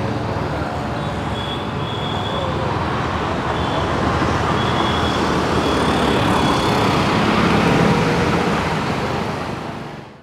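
Steady city road traffic: cars and auto-rickshaws passing on a busy street, swelling slightly and then fading out near the end.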